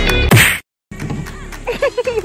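Background music ending on one short, sharp edit sound effect, then a brief hard cut to silence; quieter outdoor background with faint voices follows.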